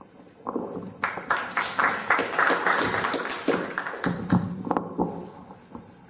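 Audience applause: a quick run of many handclaps starting about a second in, dying away after about three seconds, with a few scattered claps after.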